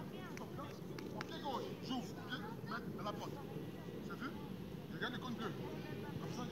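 Children's voices chattering and calling in short, high-pitched snatches, over a steady low background rumble.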